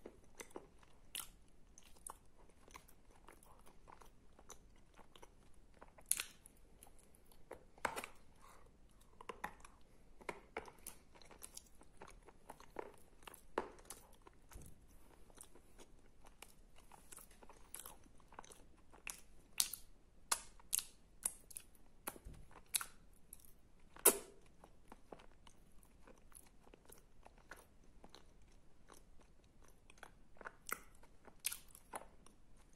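Close-miked chewing of a wet paste of edible clay with sandy clay mixed in: irregular sticky mouth clicks and smacks, coming more often and louder in the second half, with one sharp loud one about 24 seconds in.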